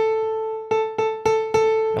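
Piano patch on a Yamaha Montage synthesizer: one note, near the A above middle C, struck hard six times. The first strike rings for most of a second, then five quicker repeats follow.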